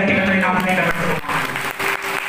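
A man's voice over a microphone and loudspeakers, then from a little past one second in, many people clapping their hands.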